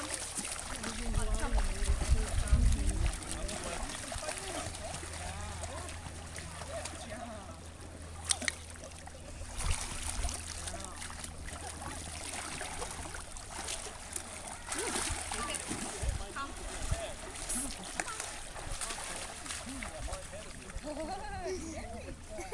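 Lake water splashing and sloshing around a swimming Newfoundland dog and a person wading beside it, with people's voices in the background. A loud low rumble comes a second or two in.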